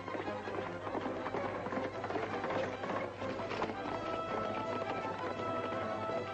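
Orchestral film score playing, with galloping horses' hoofbeats beneath it, thickest in the first few seconds.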